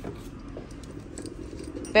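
Faint metallic clinks and small rattles of a metal Michael Kors 'MK' belt buckle being turned over in the hand, its plates knocking lightly together.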